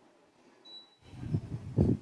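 A hand patting and sweeping across a terry-cloth towel laid on a table: a few soft, dull thumps and rustles in the second half, the loudest near the end.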